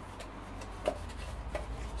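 Faint handling of a small cardboard box as it is turned over and opened in the hands, light rubbing with a soft tap about a second in.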